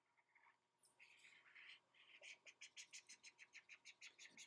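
Faint scratching of a stylus scribbling quick back-and-forth strokes across a tablet screen, about six strokes a second in the second half.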